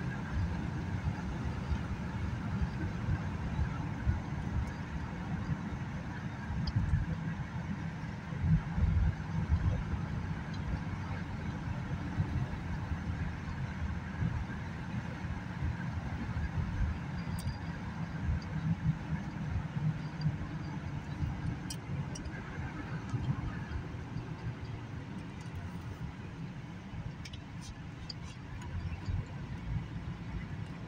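Road noise inside a moving car's cabin: a steady low rumble of tyres and engine that rises and falls a little, with a few faint clicks in the second half.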